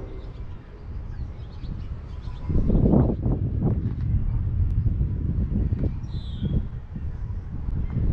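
A bird chirping briefly a little past the middle, over a low, uneven outdoor rumble that grows louder about two and a half seconds in.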